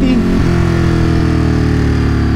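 Ducati Monster 937's Testastretta V-twin engine running under way on the road, its pitch easing down slightly as the bike slows.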